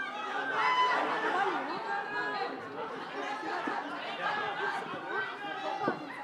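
Many people's voices overlapping in unintelligible crowd chatter.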